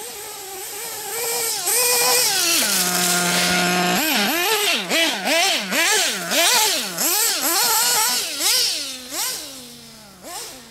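Nitro RC buggy's RB Fire-11 engine being broken in, running in repeated quick revs with the pitch rising and falling. It holds one steady high pitch for about a second around three seconds in, then goes back to rapid revving and fades near the end as the car moves away.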